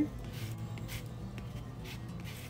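A lemon being zested on a long rasp grater: faint, repeated scraping strokes of the peel across the blades.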